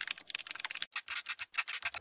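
Pencil-on-paper scribbling sound effect: a quick run of short, scratchy strokes, about six or seven a second.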